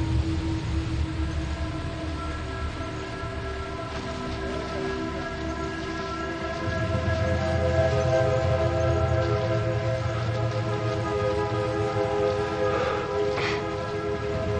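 Tense film-score drone: long held chords of several steady tones over a low rumble that swells in and out, with a brief rising sweep near the end.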